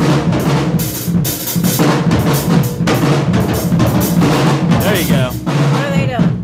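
Live drum solo on a drum kit: dense, rapid strokes on snare and cymbals over the bass drum.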